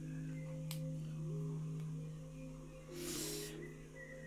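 Quiet background music of sustained drone tones whose higher notes change slowly. About three seconds in, a short breathy puff as the flame on a lit sage stick is blown out.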